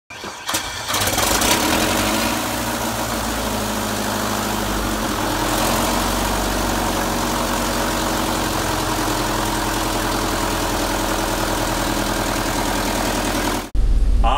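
An engine starting: a few quick cranking clicks in the first second, then it catches and runs steadily until the sound cuts off suddenly near the end.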